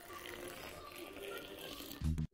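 Milk being poured into a ceramic mug of coffee powder: a faint, steady pouring splash.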